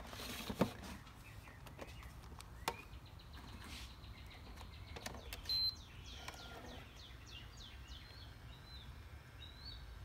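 A few faint clicks and handling sounds from a camcorder as its fold-out LCD screen is swung open, the clearest click about half a second in and a short louder bump about halfway. From about halfway on, faint short bird chirps repeat in the background.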